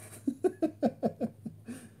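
A man laughing: a quick run of short chuckling pulses that dies away about a second and a half in, followed by a faint breath.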